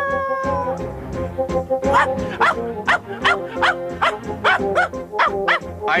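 Cartoon background music with a dog barking over it in quick, repeated yaps, about two or three a second, starting about two seconds in.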